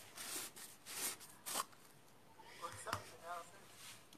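Handling of painting supplies: a few short rustling scrapes in quick succession, then quieter, with a faint murmured word and a small click about three seconds in.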